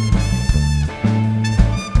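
A live band playing an upbeat, swing- or ska-style tune, led by a trumpet over electric guitar, a bass line and punchy drums.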